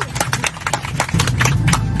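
Airplane passengers applauding: a patter of irregular sharp claps over the steady drone of the aircraft cabin.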